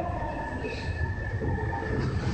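Osaka Metro 5300-series subway train rolling slowly along a station platform: a steady low rumble with a thin, steady high-pitched tone over it.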